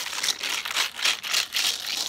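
Plastic water bottle holding water and beads shaken back and forth in quick repeated strokes, the beads and water rattling inside.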